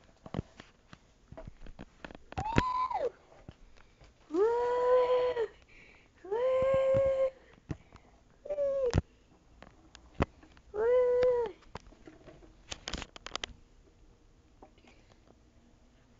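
Domestic cat meowing five times, most calls drawn out for about a second at a steady pitch and one short, with scattered light clicks and knocks between them and a small cluster of clicks near the end.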